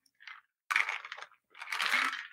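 Two short bursts of clicking and rustling from a computer keyboard and mouse.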